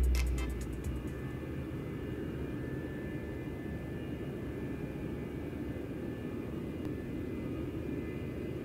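Aircraft engine running at a distance: a steady low rumble with a few faint, thin high tones held over it.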